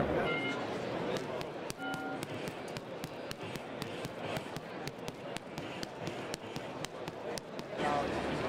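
Punches landing on a sensor-fitted punch bag: a quick, irregular run of impacts over background chatter. Two short electronic beeps sound in the first two seconds.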